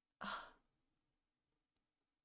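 A woman's short, breathy sigh, an 'ugh' breathed out rather than spoken, about a quarter of a second in.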